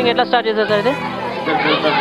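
Speech: people talking, with the chatter of other voices behind.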